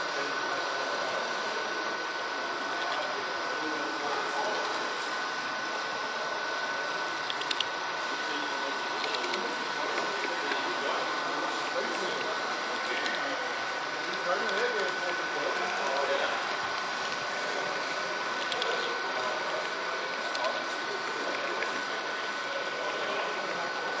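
H0-scale model train running along the layout, its small electric motor and gearing giving a steady high whine, with a few faint clicks from the track; a murmur of voices sits underneath.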